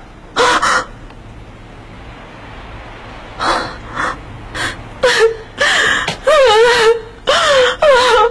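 A woman gasping in alarm: a sharp intake of breath, a few short breaths, then rising and falling distressed cries.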